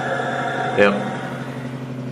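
Steady mechanical hum of a running motor, holding several fixed tones, with a short spoken 'yep' about a second in.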